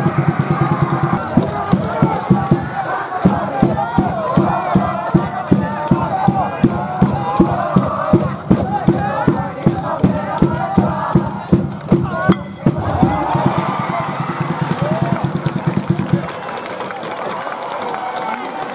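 School cheering section in the stands of a high school baseball game, chanting and shouting together to a fast steady beat of about three strokes a second, with sustained instrumental notes under it. It breaks off briefly past the middle and stops about two seconds before the end.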